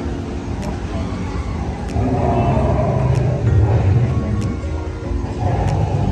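Background music of held, sustained chords with a light regular tick, over a low, loud rumble of ambient noise that swells from about two seconds in.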